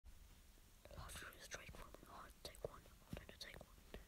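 Faint whispering: a few short breathy phrases with no music under them.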